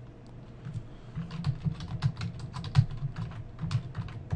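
Typing on a computer keyboard: a quick run of keystrokes that starts about a second in.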